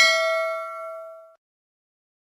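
Notification-bell sound effect of a YouTube subscribe animation: a single bright ding with several ringing tones, fading out within about a second and a half.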